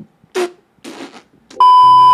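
A loud, steady TV test-pattern beep, the single-pitch tone that goes with colour bars, starts suddenly near the end with a low hum beneath it. Before it come two short clipped scraps of voice.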